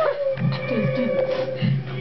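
A long, steady, high howl-like wail, held for about a second and a half before it stops, over low voices.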